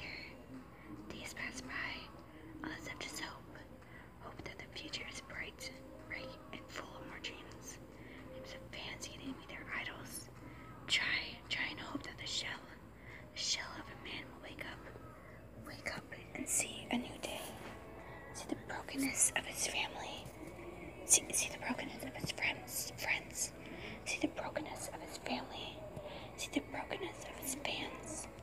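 Whispered speech: a person whispering steadily, with sharp hissing consonants.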